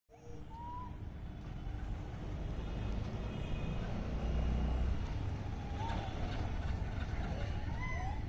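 A motorbike engine running, a low rumble that grows louder over the first half, with a few short high chirps over it.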